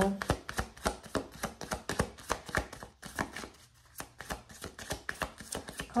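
A deck of oracle cards shuffled by hand: a quick run of crisp card-on-card clicks and flicks, with a brief break about halfway.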